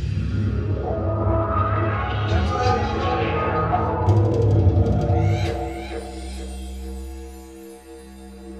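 Didgeridoo played live over looped layers from a loop pedal: a deep, pulsing drone with shifting overtones. About five and a half seconds in the live playing drops away, leaving a quieter, steady looped drone.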